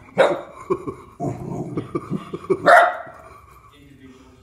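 Small dog barking at a plush toy dog: a bark just at the start, a run of short rapid yaps, and one louder, sharper bark near three seconds in.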